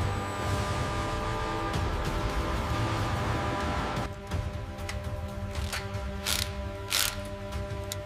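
Mechanical whirring and ratchet-like clicking over a steady drone of background music. The sound changes about halfway through, and a few sharp metallic clicks follow in the second half.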